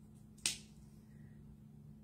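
A single sharp click about half a second in, as the snap cap of a small plastic acrylic paint bottle is flipped open, followed by faint room hum.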